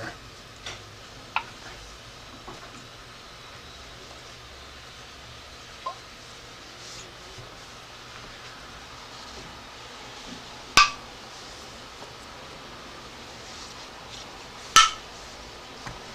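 Metal canning-jar lids popping down as the hot-processed jars cool, two sharp ringing pings about four seconds apart in the second half, with a couple of fainter clicks earlier. Each pop is the lid being pulled in as a vacuum forms inside: the jar has sealed.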